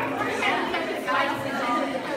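Several people talking at once, overlapping chatter in a large room.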